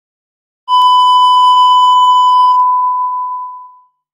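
Television test-card tone: one steady pure beep that starts under a second in, holds, then fades away shortly before the four-second mark.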